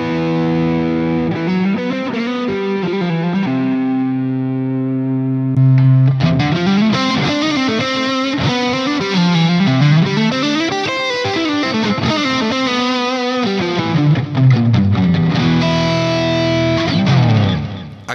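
Fender Stratocaster played through a Boss ME-90 multi-effects pedal with a distorted lead tone, heard through the pedal's loaded speaker-cabinet impulse responses, switched from one to another partway through. A long held note comes about four seconds in, then phrases of bent and wavering notes, dying away just before the end.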